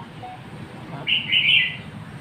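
A small bird chirping: a quick run of high chirps about a second in, lasting most of a second.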